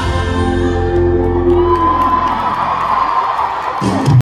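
Live band music at a pop concert with the crowd cheering and screaming over it. The deep bass fades out a little past halfway while a long high held note and the cheering carry on.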